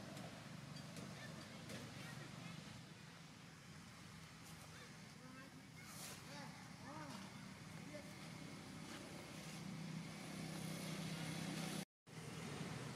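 A steady low motor hum that grows louder near the end, with faint voices and a few short high calls in the background; the sound drops out for an instant just before the end.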